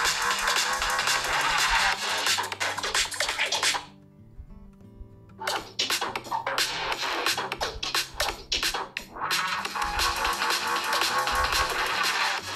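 An electronic NCS music track played through the OnePlus 10R's stereo speakers, cutting off about four seconds in. After a pause of about a second and a half, the same track plays through the Realme GT Neo 3's stereo speakers as a side-by-side speaker test.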